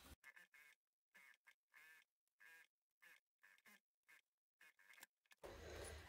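Near silence, with a string of faint, very short sounds that start and stop abruptly.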